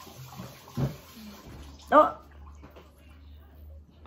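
A woman says a short "oh" about halfway through, over a faint, low, steady hum, with a brief low sound about a second in.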